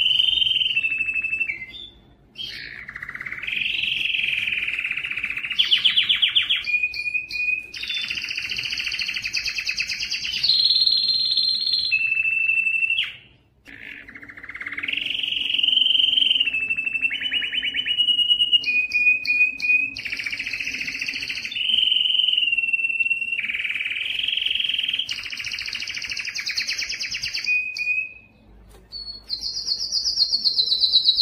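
Domestic canary singing long song phrases of rapid trills and rolls, alternating with short steady whistled notes. The song comes in bouts, broken by brief pauses about two seconds in, at about thirteen seconds, and near the end.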